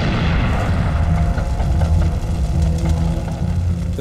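Battle sound effects: a heavy explosion rumbling on, mixed with gunfire, over background music.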